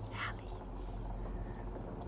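Water from a fountain spout running steadily into a stone basin, with a short hiss near the start.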